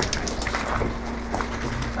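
Footsteps crunching irregularly on a wet gravel and coal floor, over a steady low hum.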